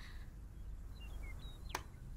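A quiet room with a low hum, a few faint short high chirps, and a single short sharp click or tap near the end.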